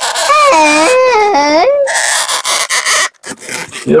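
Latex modelling balloons squeaking and rubbing as a felt-tip marker is drawn across them, with one long wavering squeal in the middle.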